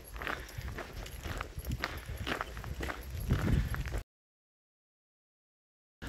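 Footsteps of a hiker walking at a steady pace, about two to three steps a second, over a low rumble. After about four seconds the sound cuts off into complete silence.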